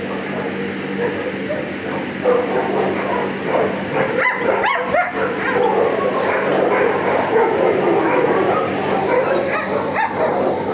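Shelter dogs barking and yipping, many overlapping calls that thicken from about two seconds in, over a steady low hum.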